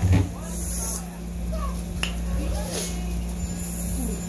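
A single thump at the very start, then a steady low hum under faint breathy mouth sounds and murmurs from a person eating spicy noodles.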